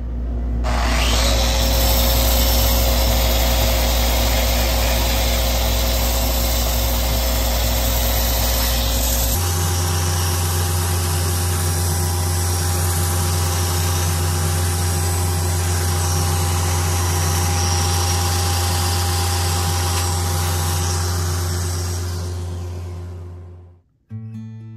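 Handheld power sander running against the spinning maple bowl on a wood lathe: a loud, steady motor hum under a sanding hiss. About nine seconds in, the hum abruptly changes pitch, and the sound fades away near the end.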